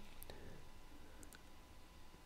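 Two faint computer mouse clicks about a second apart, each a quick press-and-release pair, over quiet room tone.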